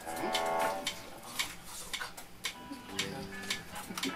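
Electric guitar being noodled quietly between songs: a held chord near the start and a few more notes later, with sharp ticks throughout and brief voices.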